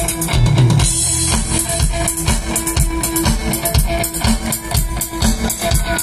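Live rock band playing an instrumental passage: electric guitar over a steady drum-kit beat, with a cymbal crash about a second in.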